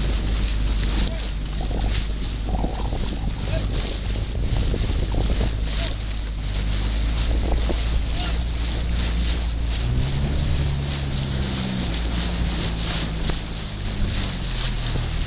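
A motor boat's engine running steadily while pacing a rowing crew, with wind on the microphone; the engine note changes about ten seconds in.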